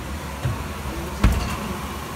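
Steady low hum from a running oven, with one sharp knock about a second and a quarter in and a softer thud before it.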